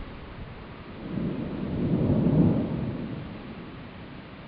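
Thunder rumbling: a deep roll that builds about a second in, peaks around the middle and fades away, over a steady hiss.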